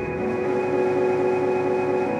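Ambient synthesizer drone: many held tones layered over a low rumble, steady and without a beat.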